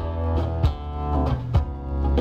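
Live acoustic guitar strummed over an electric bass line, between sung lines of a song.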